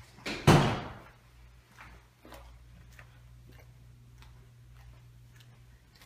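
A door shuts sharply about half a second in. Light, regular footsteps follow over a steady low hum.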